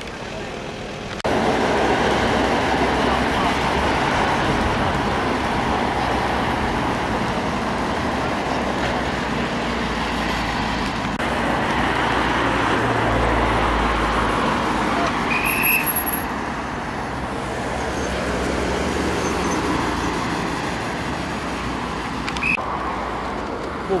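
Steady road traffic noise from vehicles driving past on a main road, with low engine sound underneath. It starts abruptly about a second in.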